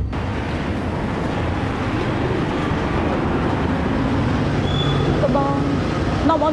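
Steady street traffic noise from a city road, with a short pitched voice-like sound near the end.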